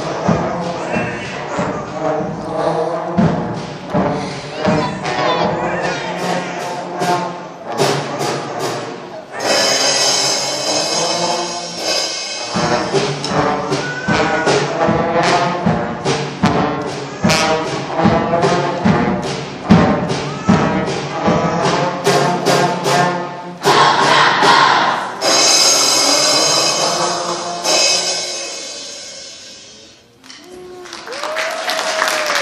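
School concert band playing a brass-led piece with trombones featured, punctuated by frequent drum hits; the music dies away near the end.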